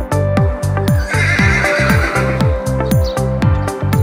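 Background electronic music with a steady beat. About a second in, a horse whinnies over the music for about a second and a half.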